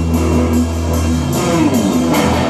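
Live rock band playing an instrumental passage: electric guitars and bass guitar over a drum kit keeping a steady cymbal beat. A low held bass note gives way to a new chord about one and a half seconds in.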